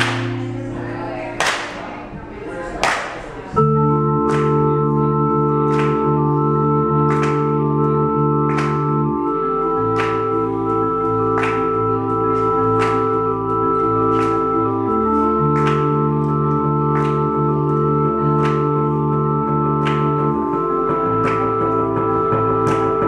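Electric keyboard on an organ sound playing held chords that change every few seconds, over a steady percussive tick about twice a second. The held chords come in about three and a half seconds in, after a few scattered strikes.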